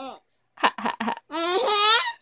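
Baby giggling: three quick short giggles about half a second in, then a longer, drawn-out laugh through the second half.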